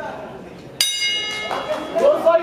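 Boxing ring bell struck once, about a second in, ringing with a bright metallic tone that fades within about half a second. It signals the start of the round.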